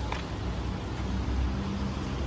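Outdoor city street ambience: a steady low rumble of distant traffic with a faint steady hum.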